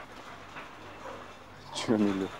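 Faint, steady outdoor background noise, then a voice begins speaking near the end.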